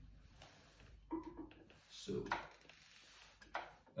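Faint handling sounds as a shellac 78 rpm record is carried to a turntable and laid on the platter, with a single sharp click about three and a half seconds in.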